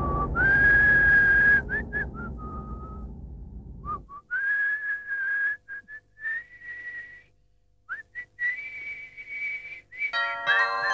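A man whistling a tune: a single clear whistled tone in short phrases, with slides up between notes and brief gaps. Over the first few seconds it runs above a deep booming hit that is dying away.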